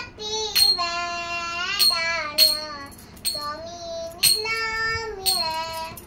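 A young girl singing a devotional chant in a high child's voice, holding long notes that slide in pitch. Small brass hand cymbals (kartals) are struck about once a second, each strike ringing on briefly.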